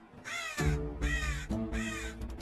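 A crow cawing twice, about a second apart, over background music with held notes.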